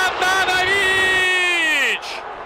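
A man's long, drawn-out shout, held on one pitch and falling away at the end: a football commentator's exclamation at a shot that only just misses.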